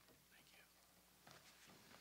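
Near silence: faint room tone with a few soft whispered voice sounds.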